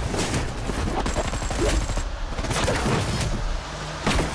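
Movie-trailer gunfight sound: a rapid burst of automatic gunfire at the start, then scattered single shots over a deep, steady low rumble.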